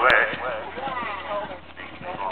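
Hoofbeats of a horse galloping on grass, with people talking over them during the first second or so.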